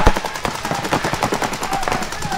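Several paintball markers firing rapid strings of shots at once, a loud cluster of shots at the start and then a fast, steady patter.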